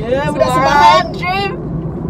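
A car driving, its steady low engine and road rumble heard from inside the cabin, under a woman's loud, drawn-out voice that glides up and down and stops about a second and a half in.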